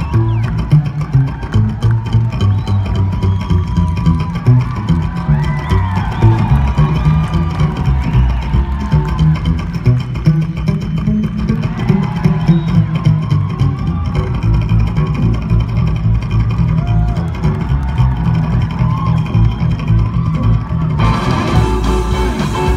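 Live rockabilly trio music: an upright bass plays busy low notes under electric guitar lines, and the sound gets brighter and fuller about a second before the end.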